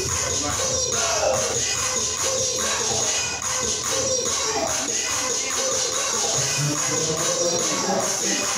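Background music with a steady beat and a melodic line over it.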